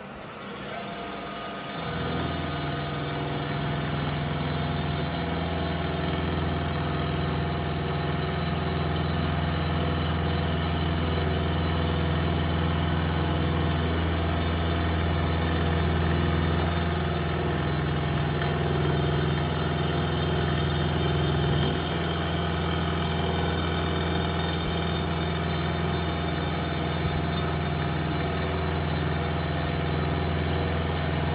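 Vertical milling machine running, its end mill cutting a tapered bore in a metal engine mount: a steady machine hum with a squeal of higher tones over it. The cut gets louder about two seconds in and then runs evenly.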